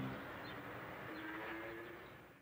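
Faint street ambience of traffic noise with a few short high chirps, as the last of a guitar piece dies away at the start. It fades out at the end.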